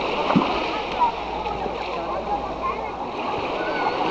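Seawater splashing, with a steady wash of water noise and people's voices and calls around.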